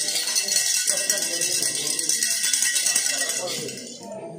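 Small bells jingling and ringing rapidly and continuously as a dense metallic shimmer, dying away near the end.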